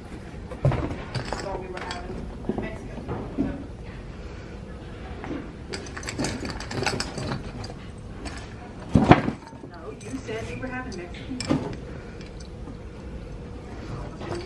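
Indistinct talking with a few knocks and clunks of things being handled; the loudest is a sharp thump about nine seconds in.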